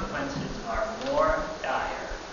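Speech only: a person talking in a room, with a few faint low knocks beneath.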